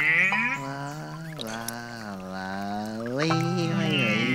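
A voice humming a lazy tune in long, gliding notes, the pitch dipping about a second and a half in and rising again near the end, with background music.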